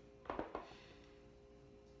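A quick cluster of light clicks and knocks a third of a second in, from things being handled on the desk, then a faint steady hum.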